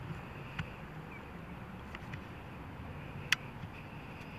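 Steady low rumbling background noise with a faint higher hum, broken by a few sharp clicks, the loudest about three seconds in.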